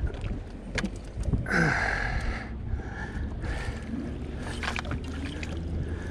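Water splashing and sloshing against the side of a small fishing boat, with a louder rush of splashing about a second and a half in and scattered knocks and rattles from gear on the boat, as a hooked king salmon is brought alongside for the landing net.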